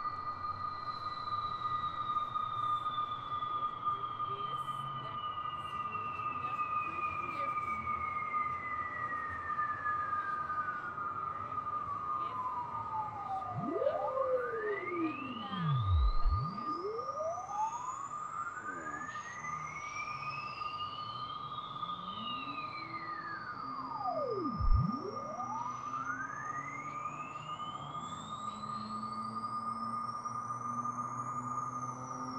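Electronic drone music: a steady high tone held under slow synthesizer sweeps that glide down to a deep low and climb back up, crossing each other. The sweeps bottom out about halfway through and again near the end.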